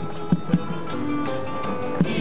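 A student tuna ensemble playing: strummed acoustic guitar and mandolins with a violin holding notes, and a couple of drum beats near the start.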